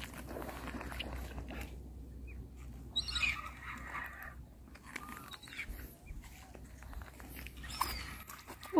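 A few faint bird calls over a steady low wind rumble on open water.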